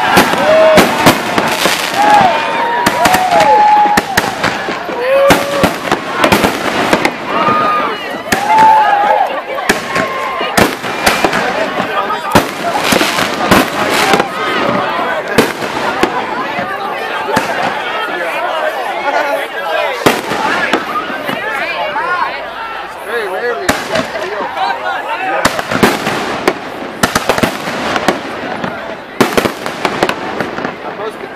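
Aerial fireworks bursting overhead: a dense run of sharp bangs and crackles, thinning out for a moment about two-thirds of the way through before picking up again.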